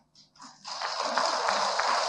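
Audience applauding, a dense patter of many hands clapping that starts about half a second in and then goes on steadily.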